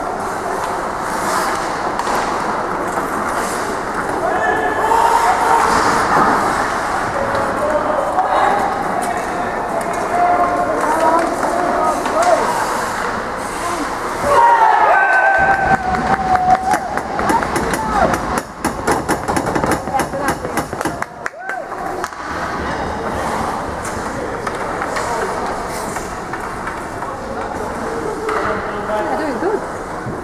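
Indoor ice rink during a hockey game: indistinct voices of players and onlookers echoing in the hall. About halfway through comes a stretch of quick clicks and knocks.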